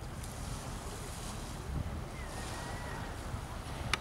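Wind buffeting the microphone over a steady low rumble of shore ambience, with small waves washing at the water's edge. A faint high tone sounds briefly in the middle, and a sharp click comes near the end.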